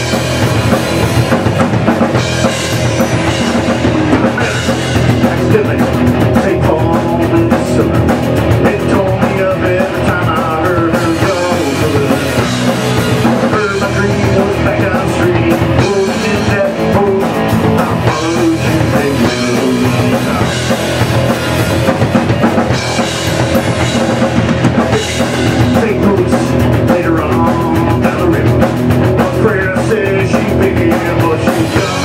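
A live rock band playing loudly and without a break: two electric guitars over a drum kit.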